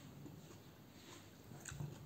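Near silence: quiet room tone, with a soft knock near the end as a small salt container is picked up from the table.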